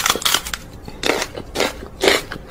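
Crunching, chewing mouth sounds made by a person close to the microphone: short crunches at uneven intervals, four or five over two seconds.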